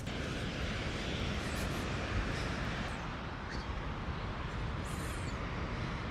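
Ocean surf breaking and washing up a sandy beach: a steady rushing noise with a low rumble underneath.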